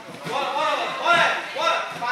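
Raised voices calling out, the words not made out.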